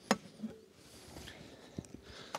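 A few light knocks and clicks of wooden beehive frames and boxes being handled, the sharpest just at the start and two smaller ones near the end.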